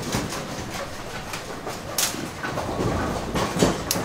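Ten-pin bowling pinsetter machinery running on several lanes: a steady mechanical rumble and rattle with repeated clanks and knocks, a sharp one about two seconds in and another near the end.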